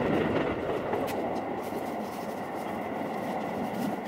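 A moving train heard from inside the carriage: a steady running rumble.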